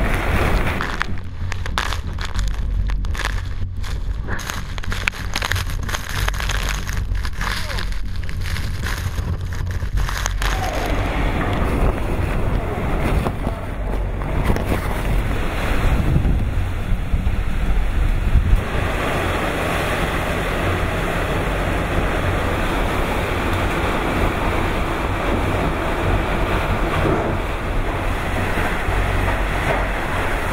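Super typhoon winds blowing hard and buffeting the microphone with a heavy low rumble, along with wind-driven rain. About ten seconds in, the sound opens up into a fuller, brighter hiss of wind and rain.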